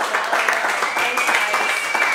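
A small group of seated diners clapping, with voices calling and cheering over the applause.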